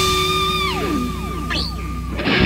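Live jazz-fusion band with electric guitar, electric bass and drums. A high sustained note is followed, about halfway through, by a run of falling pitch slides over a steady low bass-and-drum bed.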